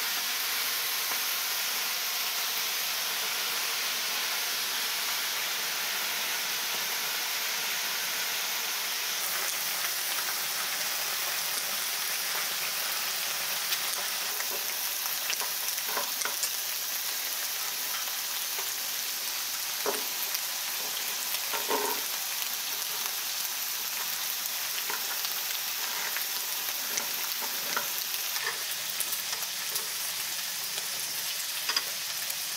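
Pork belly slices and kimchi sizzling steadily on a tabletop griddle plate. From about halfway through, scattered short clicks and taps come from metal scissors and tongs working on the plate.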